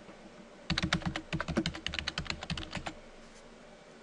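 Fast typing on a computer keyboard: a quick run of keystrokes starting just under a second in and stopping about a second before the end.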